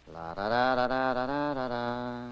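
A man's voice chanting wordless 'da' syllables in one long held phrase, which steps slightly down in pitch and fades out near the end.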